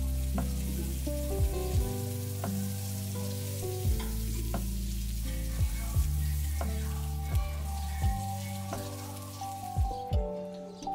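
Duck breasts sizzling in a frying pan over medium-low heat, their fat rendering, a steady frying hiss. Background music with a soft beat plays over it.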